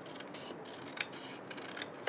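Scissors snipping through stiff card in a few short, careful cuts, the sharpest snip about a second in.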